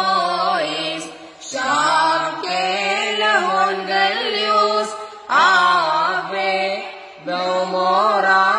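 A group of boys' voices chanting a Syriac Kukkilion hymn together, sung in melodic phrases with short breaks for breath about a second and a half, five and seven seconds in.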